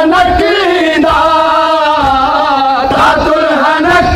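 Men's voices chanting an Urdu noha, a Muharram mourning lament, in loud, drawn-out sung lines without a break.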